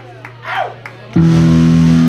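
A steady amplifier hum with a short shout and a few scattered claps, then about a second in a loud electric guitar chord is struck and held, opening the next hardcore punk song.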